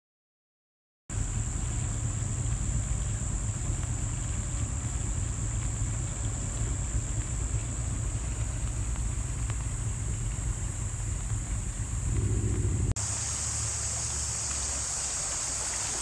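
Floodwater of a swollen creek flowing over grassy ground: a steady rushing hiss with a deep wind rumble on the microphone. It starts about a second in and changes abruptly to a brighter hiss shortly before the end.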